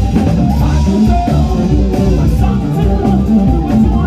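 Live band playing a blues-rock jam: electric guitars, drum kit and keyboards, loud and steady with a heavy low end and regular drum hits.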